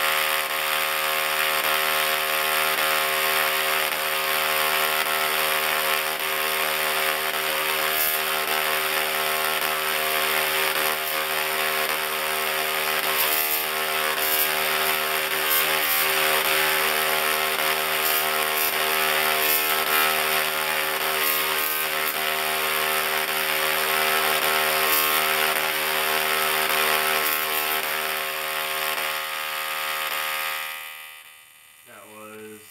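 Double-resonant solid-state Tesla coil firing continuously, its arcs giving a loud, steady, harsh buzz at the interrupter's pitch. Sharper crackles come here and there, mostly in the middle stretch as the sparks reach out and strike.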